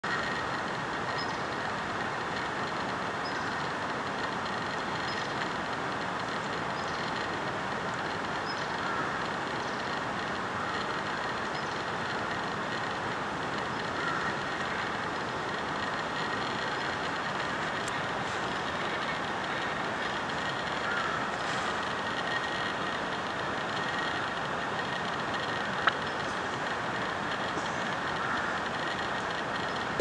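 Steady, even rushing outdoor noise, with a faint high chirp repeating about every two seconds and one sharp click near the end.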